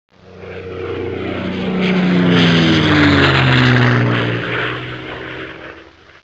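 Aircraft flyby sound effect: an engine drone swells, peaks about halfway through, then drops in pitch and fades away as it passes.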